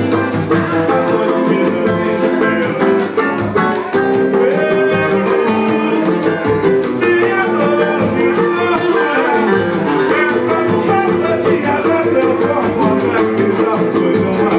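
Live samba played acoustically: a nylon-string guitar and a cavaquinho strumming a steady beat with percussion, and a man singing into a microphone.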